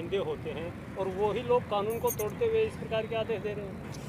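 Speech from a voice further from the microphones, quieter than the main speaker, over a low steady rumble of traffic.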